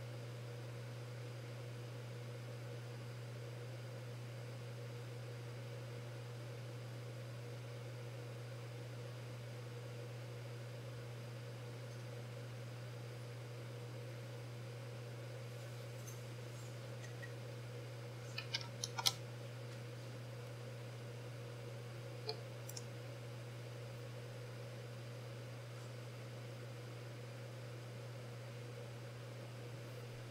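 Steady low background hum with a faint steady tone, broken just past halfway by a short flurry of computer keyboard clicks and a couple more clicks a few seconds later.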